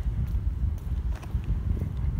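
Wind rumbling on the microphone, with footsteps on a paved walkway ticking about twice a second.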